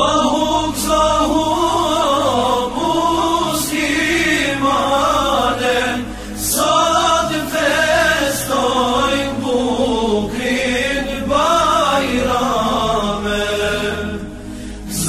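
Islamic devotional chanting by a group of voices, sung in Arabic as ornamented, wavering melodic phrases a few seconds long with short breaks between them.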